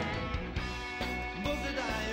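Live rock band playing, with drums and electric guitar, in a passage between the lead vocal lines.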